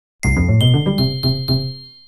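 Chiming jingle sound effect marking a slide change: a quick run of bell-like notes over a sustained high ring. It starts about a quarter second in and fades out toward the end.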